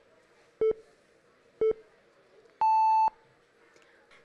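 Quiz-show countdown timer beeping: two short low beeps a second apart, then a longer, higher beep about half a second long marking that time is up.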